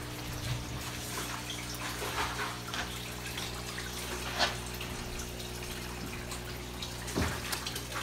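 Steady pump-driven running water, trickling and bubbling, over a steady low electric hum, with one light tap about halfway through.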